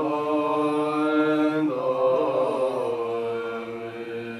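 Tibetan Buddhist monks chanting a prayer together in low voices, holding long notes and moving to a new note a little before halfway.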